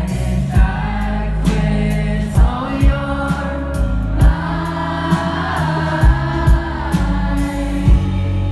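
Live indie rock band playing through a venue PA: an electric guitar, a bass and a drum kit, with singing over them and a drum hit every second or so.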